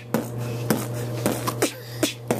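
A man beatboxing: sharp mouth-made percussion hits, about two a second, in a steady beat.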